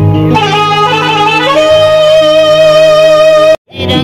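Live devotional music from a stage band: an electronic keyboard plays a melody line over a low drone, settling into one long held note. The sound drops out abruptly for a moment near the end.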